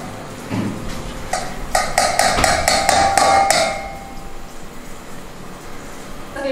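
Stainless steel strainer knocked against the rim of a steel pot to shake out boiled sprouted mung beans: a quick run of about ten metal taps, about four or five a second, each with a bright ringing tone, starting about a second in and lasting about two seconds.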